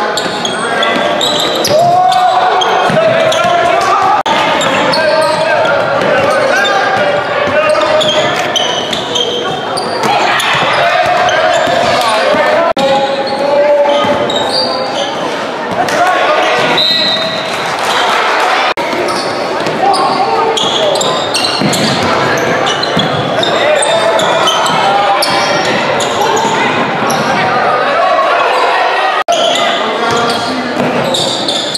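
Basketball game sounds echoing in a large gym: a ball bouncing on the hardwood court amid continuous crowd voices and shouting from the stands.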